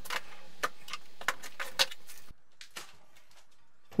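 Metal weights clinking and knocking as they are lifted off a glass sheet and dropped into a plastic tray: a string of sharp clicks, several a second at first, then fewer and fainter in the second half.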